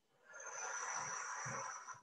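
One long audible exhale, breathed out as the arms come down in a deep-breathing exercise, with a thin high whistle on the breath. It starts about a third of a second in and lasts about a second and a half.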